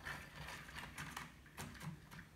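Recoil starter of a Stihl string trimmer slowly rewinding its pull cord, giving faint irregular clicks. It is the noise of a sticky, dry starter spring, still heard a little even after a shot of spray lube.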